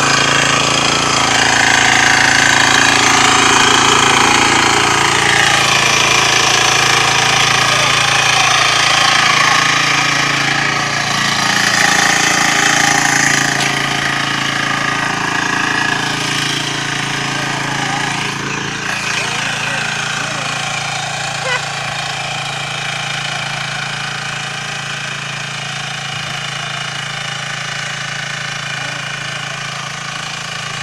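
Walk-behind power tiller's single-cylinder diesel engine running steadily under load with a rapid knocking beat while it ploughs soil, growing gradually fainter in the second half as the machine moves off.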